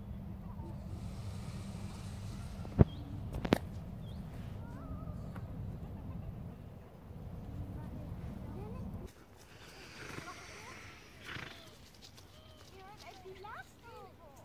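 Wind rumbling on the microphone with faint distant voices, broken by two sharp knocks about three seconds in; the wind noise stops abruptly about nine seconds in, leaving only the faint voices.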